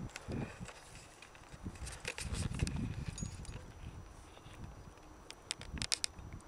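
Faint scattered knocks and clicks, with a low rumble between about two and three seconds in and a quick run of sharper clicks near the end.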